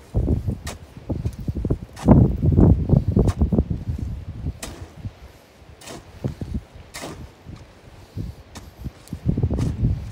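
A long-handled digging tool chopping into shale: several short sharp knocks, a second or so apart, spread through the stretch. Between them come bouts of low rustling and rubbing from clothing against a body-worn microphone as the arms swing overhead, loudest a couple of seconds in.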